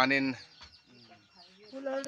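A voice speaks briefly at the start, then a pause with faint, repeated short high chirps of small birds or chicks, about four a second, before a woman starts speaking near the end.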